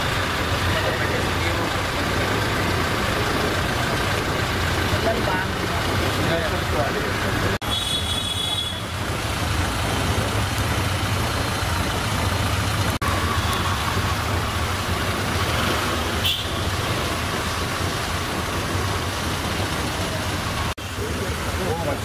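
A Toyota Innova SUV's engine idling with a steady low hum, under the indistinct talk of people standing around it. The sound breaks off abruptly three times.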